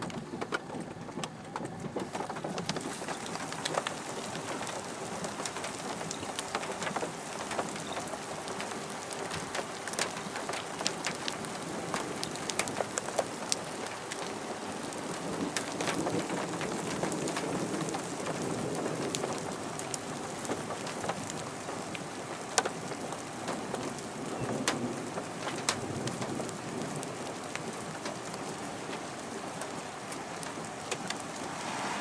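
Steady rain falling, with many irregular sharp taps of drops striking a hard surface.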